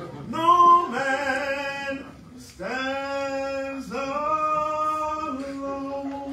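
A man singing unaccompanied, holding a few long sustained notes one after another, with a brief pause about two seconds in.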